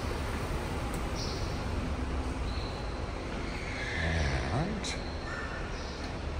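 Steady low rumble of a parking garage's background noise. Faint high-pitched squeaks or calls come and go, and there are a couple of sharp clicks, one about a second in and one near the end.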